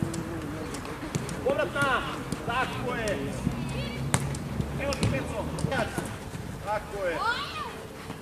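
Young football players shouting and calling to each other across the pitch. There are a few sharp thuds of the ball being kicked, the loudest about four seconds in.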